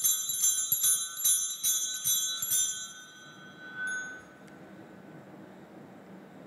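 A cluster of altar bells shaken in repeated jingling strikes, about three a second, rung during the blessing with the monstrance; the ringing stops about three seconds in and dies away.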